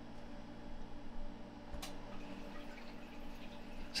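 Low steady hum in a quiet room, with a single laptop click a little under two seconds in.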